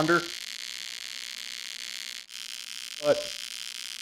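AC TIG welding arc on aluminum from a Lincoln Square Wave TIG 200 running at 120 amps and 60 Hz AC frequency: a steady buzzing hiss that breaks off for an instant about two seconds in.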